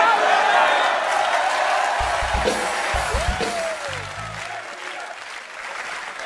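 Studio audience applause and crowd noise, slowly fading, with a few low bass notes about two to four seconds in.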